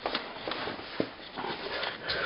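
Camera handling noise: light shuffling, with a couple of short clicks near the start and about a second in.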